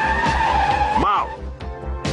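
Cartoon soundtrack: a sustained high squealing tone ends about a second in with a quick rise and fall in pitch, over background music with a steady low pulse.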